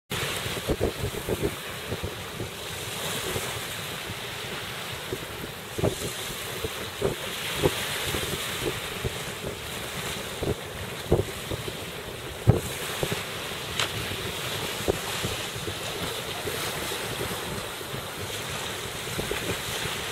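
Wind blowing across the microphone over the sound of sea waves and surf, with occasional brief low thumps from gusts hitting the mic.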